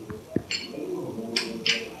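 Metal buckle of a full-body safety harness clinking a few times as its waist strap is threaded and fastened, with a low, drawn-out pitched sound underneath.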